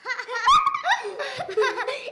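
Children laughing heartily, a burst of boys' laughter that carries on through, with a short knock about half a second in.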